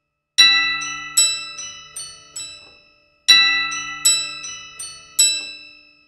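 Spectrasonics Keyscape toy piano with a glockenspiel layer, a sampled software instrument played from a keyboard: bright, bell-like struck notes that ring and fade. It plays a short phrase of four or five notes, then the same phrase again about three seconds in.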